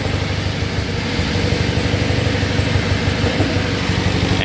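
Small single-cylinder horizontal diesel engine running steadily at idle, an even rapid firing beat.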